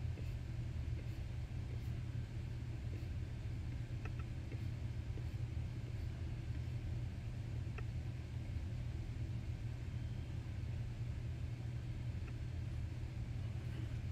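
A steady low background hum with a few faint ticks scattered through it.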